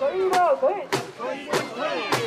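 Mikoshi bearers chanting in rhythm as they carry the shrine, with sharp clacks that keep time about every 0.6 seconds.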